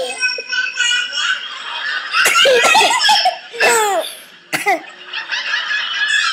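A toddler giggling and laughing: several short, high-pitched laughs with quieter gaps between them.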